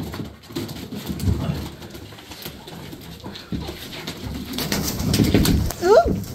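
Domestic pigeons cooing, low and repeated, with a few scattered clicks, and a short rising call just before the end.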